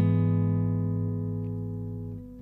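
Acoustic guitar chord left to ring, its strings sustaining and slowly fading with no new strums.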